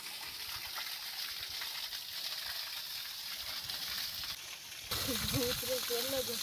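Water pouring and splashing, a steady hiss. A man's voice starts near the end.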